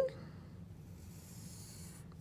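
Wooden pencil drawing a curved line on paper: faint scratching over a low steady hum.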